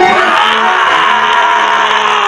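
A man's loud, long held yell, one unbroken high cry that slides a little down at first and then holds steady.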